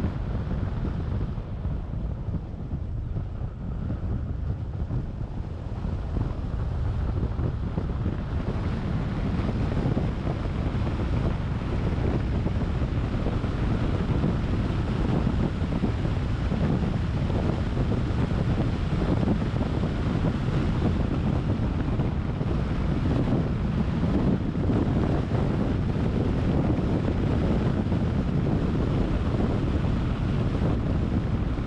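Wind rushing over the microphone of a camera on a moving car, with steady low road and tyre rumble. Somewhat quieter for the first several seconds, then louder and steady.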